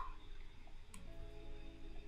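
Faint background music with steady held tones, and a single light click about a second in, a stylus tapping the tablet screen to apply a paint-bucket fill.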